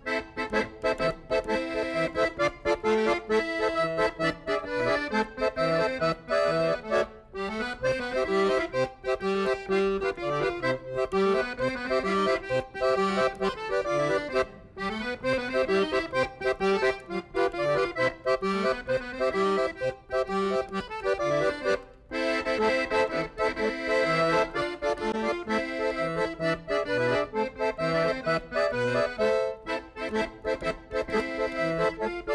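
Piano accordion played solo: a melody and chords on the right-hand keyboard over a steady, rhythmic bass from the left-hand buttons. The music breaks off briefly between phrases three times, about 7, 14 and 22 seconds in.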